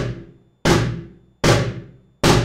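Cajón struck with flams: both hands hit the top edge almost together, one just ahead of the other. There are three strokes about 0.8 s apart, each dying away quickly.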